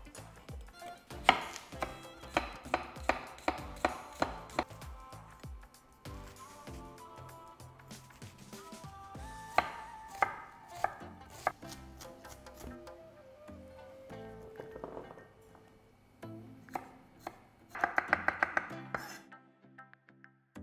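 Chef's knife dicing an onion on a wooden cutting board: a run of steady chops at about three a second, scattered strokes, then a quick burst of chops near the end.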